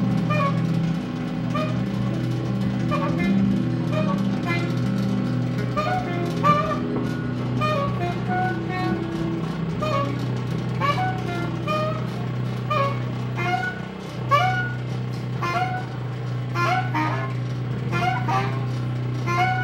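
Live free-improvised music from a quartet of guitar, bass clarinet, double bass and drums. Steady low sustained tones and stepping low notes lie under short, scattered higher pitched blips, and the sharp drum and cymbal hits grow busier toward the end.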